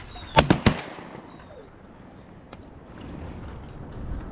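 Three shotgun shots in quick succession from two hunters' guns, all within about a third of a second, less than a second in.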